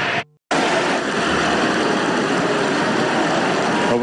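Large audience in a hall applauding, a dense steady clatter of clapping that follows a brief gap of silence just after the start.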